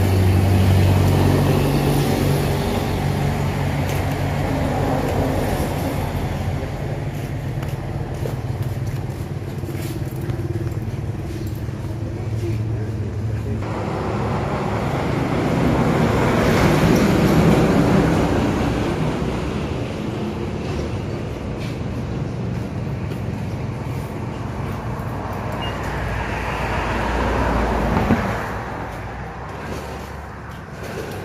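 Motor vehicle engine running with a steady low hum, then a louder vehicle passing that swells and fades in the second half, ending abruptly near the end.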